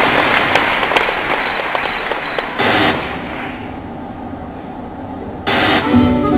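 Theatre audience applauding, loud at first and dying away over about four seconds, with a brief louder swell about two and a half seconds in and again near the end.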